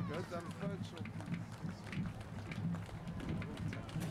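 Footsteps of a column of infantry marching past over grass, with people talking close by.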